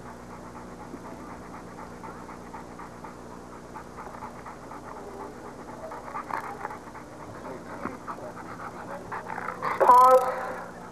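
A Rottweiler panting steadily with its mouth open, over a constant low hum. A short voice sound comes just before the end.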